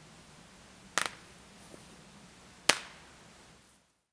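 Two sharp slaps about a second and a half apart, the second louder and crisper than the first.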